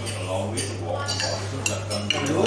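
Cutlery clinking against a plate, with a few sharp clinks about a second and a half in, over background chatter and a steady low hum.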